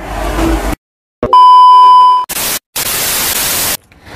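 Electronic transition sound effect: a short hiss, a moment of dead silence, then a loud steady beep for about a second, followed by static hiss that stops suddenly near the end.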